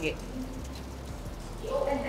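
Steady hiss of water falling from a waterfall feature, over a low hum.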